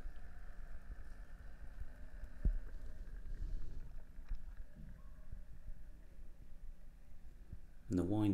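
Very faint, steady hum of a Wolf Viceroy Module 2.7 watch winder's motor turning its cradle, heard with the microphone held right against the box, over a low rumble. One small click comes about two and a half seconds in.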